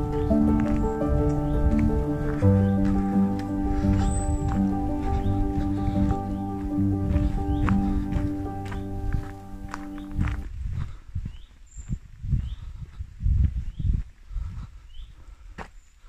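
Soft background music of held keyboard chords, which stops about two-thirds of the way through. After it, a walker's footsteps on a woodland path, with faint bird chirps.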